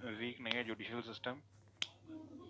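A person talking for just over a second, then one sharp click near the end.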